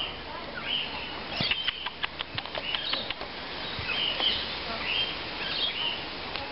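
Small birds chirping now and then, with a quick run of light clicks and crackles around the middle.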